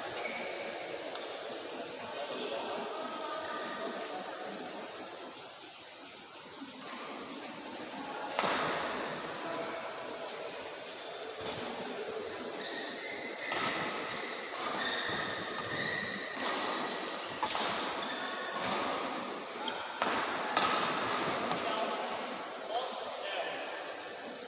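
Badminton rackets striking a shuttlecock in a rally, a string of sharp hits roughly a second apart through the second half, ringing in a large indoor sports hall over a bed of voices.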